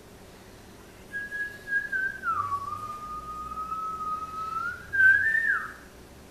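A person whistling a single slow, wavering note: it starts about a second in, drops lower and holds, then rises briefly before falling away near the end.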